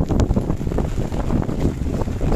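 Wind buffeting the microphone: a loud, uneven, gusting rumble.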